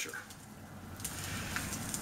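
Faint handling noise with a couple of light clicks: the two snapped halves of a fiberglass rebar rod being held and moved in gloved hands.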